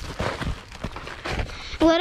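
Irregular footsteps and scuffs on dry grass and loose rocky ground, a few uneven thuds over about two seconds.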